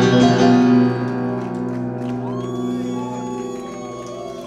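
Live music ending on piano: a held chord drops in level about a second in and slowly fades. Near the end a few soft notes slide up and hold over it.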